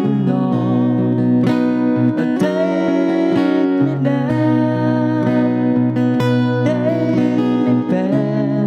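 A man singing with acoustic guitar accompaniment, holding long notes over strummed chords.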